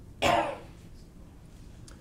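A man gives one short cough to clear his throat.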